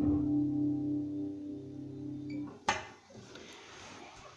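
Acoustic guitar in open C tuning, its last chord left ringing, then damped so it stops suddenly about two and a half seconds in. A sharp click follows, then faint rustling as the recording device is handled.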